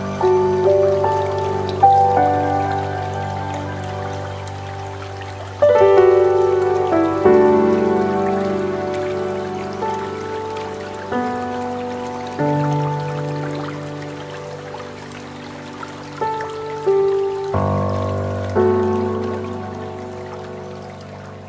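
Slow, calm instrumental background music: held chords with single notes struck every second or two, each fading away.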